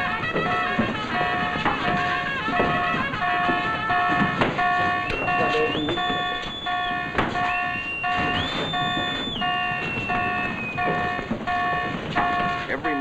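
A warship's general quarters alarm sounding: a pitched electronic bong repeating about one and a half times a second. It calls the crew to battle stations. Twice in the middle a long whistle-like tone rises, holds and falls over it, and a few sharp knocks sound.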